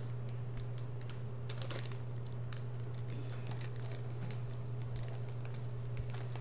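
Light, scattered clicks and crinkles of plastic food packaging being handled and set down on a wooden table, over a steady low hum.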